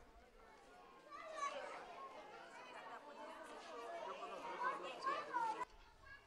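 Several young children's high-pitched voices chattering and talking over one another, starting about a second in and cutting off abruptly shortly before the end.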